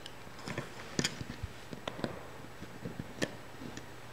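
Faint, scattered light clicks and taps of a plastic loom hook and rubber bands against the plastic pegs of a Rainbow Loom as bands are looped over, a few irregular ticks over several seconds.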